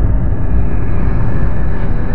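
Road traffic noise from a busy city highway: a loud, steady, deep rumble of many vehicles.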